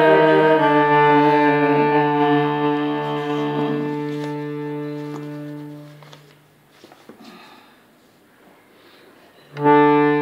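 Hand-pumped harmonium holding a sustained reedy chord, moving to a new chord about half a second in, then dying away about six seconds in. A few faint clicks and knocks fill the quiet gap before a loud chord starts again near the end.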